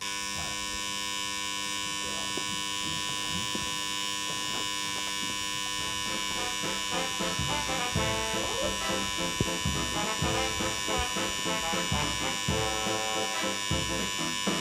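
Title-sequence sound effect: a steady, dense electronic buzz that sets in abruptly, with irregular clicks and crackles building over its second half.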